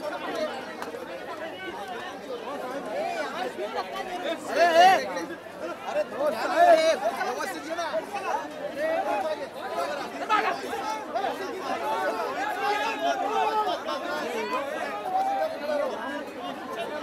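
A packed crowd of people talking and calling out over one another, many voices at once with no single speaker standing out. There are louder shouts about four and a half and six and a half seconds in.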